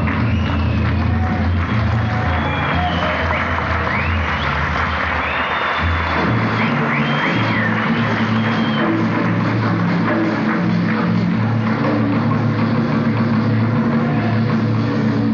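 Live rock band (electric guitars, bass, keyboards, drums) playing an instrumental passage. A high lead line with pitch bends and glides rides over a dense band sound, and the bass line moves to a new, higher note pattern about six seconds in.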